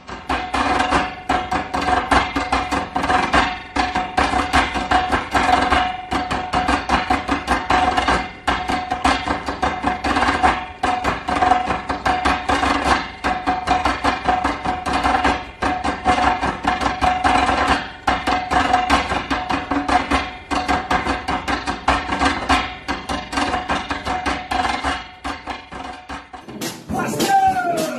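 Fast percussion music: dense, rapid hand-drum strikes without pause, over one sustained held note.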